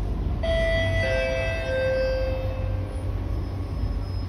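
Two-note descending chime, a higher note then a lower one, from the onboard public-address system of an SMRT C151B metro train, the signal before a station announcement. Under it runs the steady low rumble of the train in motion.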